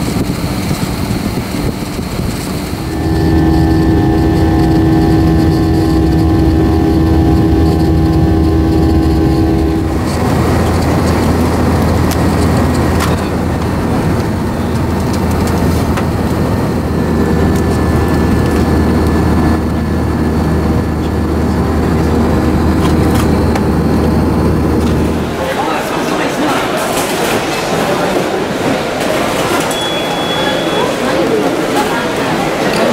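Steady cabin drone of a Boeing 787 airliner in flight, low and even, with clicks and crinkling from a paper-wrapped snack box being handled partway through. About 25 seconds in the drone cuts off abruptly and gives way to the hubbub of a busy airport terminal hall.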